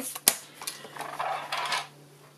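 A sharp click, then a paper trimmer and cardstock strips being slid and handled on a desk, rustling and scraping for about a second and a half.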